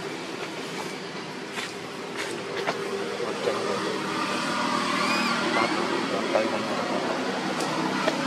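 Steady background din with a low hum and a few faint clicks, broken about five seconds in by two short, high, arched squeaks from a baby long-tailed macaque crying.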